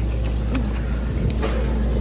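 Steady low hum of supermarket background noise, with a few sharp clicks a little over a second in as a plastic-wrapped sausage pack is picked up off the shelf.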